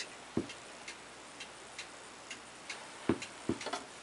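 Light mechanical ticking from the drive of a small spinning figure-skater toy, a little over two ticks a second, with a few louder knocks.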